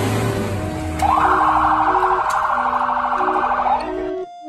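Emergency vehicle siren sounding a fast warbling wail, starting about a second in and cutting off just before the end, over steady organ music.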